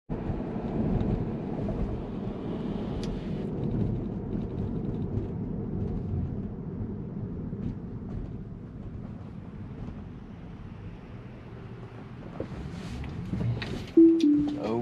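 Road and tyre noise inside a Tesla's cabin while driving: a steady low rumble that fades gradually over the first ten seconds or so as the car eases off.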